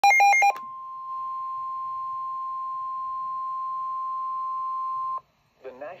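A Midland weather alert radio's speaker sounding the NOAA Weather Radio warning alarm tone. It opens with about half a second of loud, rapid alternating beeps, then holds one steady tone for about four and a half seconds, which cuts off abruptly. The tone signals that a warning message is about to be read, and a synthesized voice begins it right at the end.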